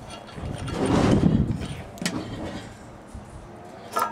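A vehicle passing nearby, its sound swelling and fading within the first two seconds, followed by a single sharp click.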